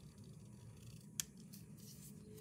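Scissors snipping a strip of paper: one sharp snip about a second in, then a few softer cutting sounds.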